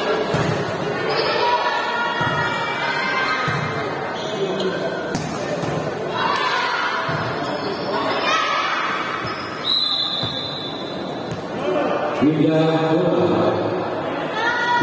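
Volleyball rally on an indoor court: the ball is struck several times, each a sharp smack, under continuous shouting from players and spectators. The voices grow louder about twelve seconds in, as the rally ends.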